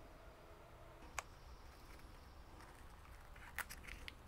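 Near silence with a single sharp snip of scissors about a second in, cutting a drying pitcher leaf off a cobra lily, and a couple of faint clicks near the end.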